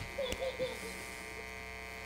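Steady electrical mains hum with a buzzy edge from the PA sound system, running under a pause in the speech. A faint voice can be heard in about the first half second.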